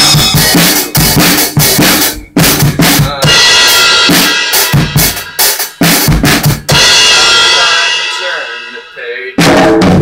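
Tama acoustic drum kit played hard with no singing: fast kick, snare and tom hits for about three seconds, then cymbals washing over the beat. A crash cymbal is then left ringing and dying away for about two seconds before a fresh crash with the kick comes in near the end.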